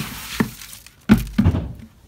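Knocks and heavy thumps as a red plastic feed bucket is handled at a horse's stall while a horse is given its feed: a short rustling rush at the start, a sharp knock about half a second in, then a cluster of thumps a little after one second.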